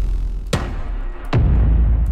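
Cinematic impact hits from the Heavyocity Gravity 'Impacts Menu' sample instrument, a different impact on each key, played one after another. New hits land about half a second in and again past the middle, each a sudden strike with a deep low boom and a long decaying tail.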